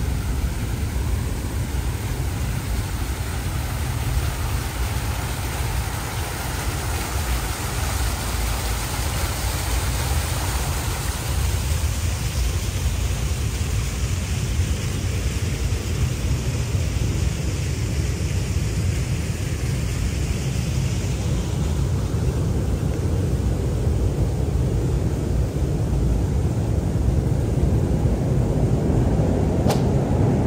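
Water splashing from a garden fountain's vertical jets, a steady hiss that fades after about twenty seconds, over a continuous low rumble.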